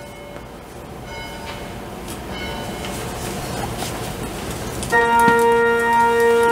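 A few scattered, bell-like chime tones sound as the level gradually rises. About five seconds in, a sustained organ chord begins and holds, opening the music.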